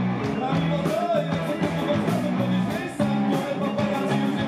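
Rock band playing live: drums with regular cymbal strikes, electric guitars and bass guitar, with a singer's voice over them. The music dips briefly about three seconds in, then comes straight back.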